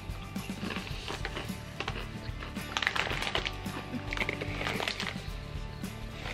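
Crisp ketchup-flavoured potato chips being crunched and chewed close to the microphone, in short crackly bursts that are strongest about halfway through, over quiet background music.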